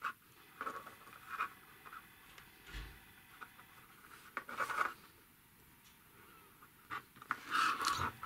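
Light clicks and scrapes of small plastic parts being handled: the water-filled syringe cylinder of a hydraulic robot arm kit being fitted onto its tubing, in short scattered bursts with a small cluster about halfway through and more near the end.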